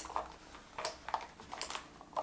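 A few light clicks and taps of small plastic makeup items being handled and put down, as mascara is set aside and a lip pencil picked up.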